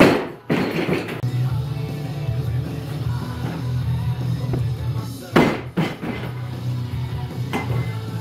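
Rock music with a steady beat, broken twice by the heavy crash of a loaded Olympic barbell with bumper plates dropped onto a wooden lifting platform: once right at the start and again about five seconds in.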